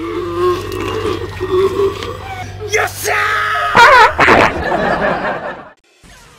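Horror film soundtrack: vocal sounds over a low steady drone, rising into loud, wavering high-pitched cries about three to four seconds in. The sound cuts off abruptly shortly before the end.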